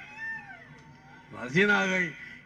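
A man speaking into a microphone through a loudspeaker system, his speech coming back about a second and a half in. Before it comes a brief high call that falls in pitch.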